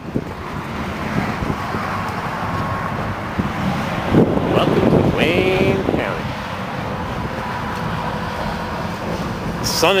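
Wind buffeting the microphone over a steady rush of road traffic, with a short snatch of voice about halfway through.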